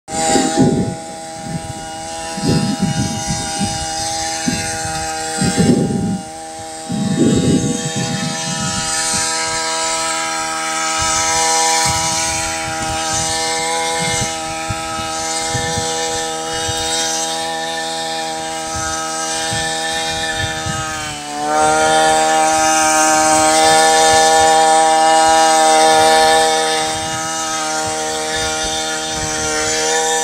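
Backpack brush cutter's small petrol engine running steadily while its paddle-wheel weeder head turns through wet, muddy soil, with uneven low churning bursts over the first eight seconds or so. About two-thirds of the way through, the engine pitch dips briefly, then it runs louder at higher revs.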